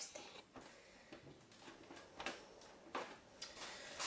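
Faint handling of plastic bottles and a plastic sheet: a few soft, short taps and clicks, the loudest about three seconds in, over low room tone.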